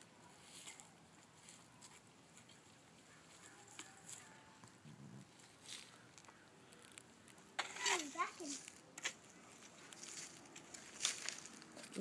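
Small plastic rake scratching through garden soil and dead leaves in faint, scattered strokes. About eight seconds in, a child's voice gives a short, rising and falling vocal sound.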